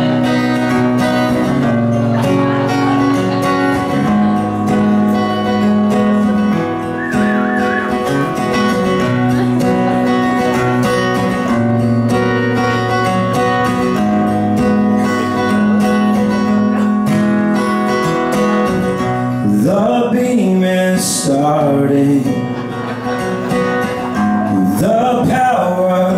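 Acoustic-electric guitar played live through a PA, an instrumental song intro of steady, ringing chords that change every second or two. A voice comes in over the guitar about twenty seconds in and again near the end.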